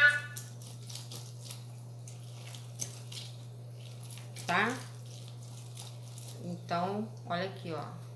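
Half a red-fleshed orange being twisted and pressed on a plastic hand reamer juicer: faint squelching and scraping clicks of the fruit on the ridged cone, over a steady low hum. A voice speaks briefly about halfway through and again near the end.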